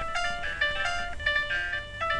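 Electronic chime-like tones in a quick run of short notes, several pitches sounding together and changing about three times a second.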